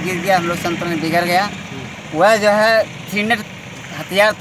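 A man speaking, with a vehicle engine running steadily behind him, and a pause of about half a second in his speech near the middle.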